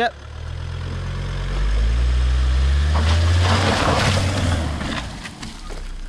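Volvo V70 estate car's engine revving up and rising in pitch as it pulls away, followed by a loud rush of tyre noise that fades as the car moves off.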